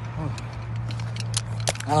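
Handling noise from a phone being moved while it films: a run of short clicks and rubs in the second half, over a steady low rumble. A brief voice sound comes near the start and a spoken "ah" right at the end.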